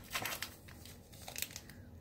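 Clear plastic sample bag crinkling as it is handled, a scatter of soft crackles.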